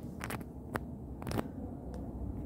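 A few light clicks and taps from a hand handling the phone it is recording on, irregular and spread over two seconds, over a low steady hum.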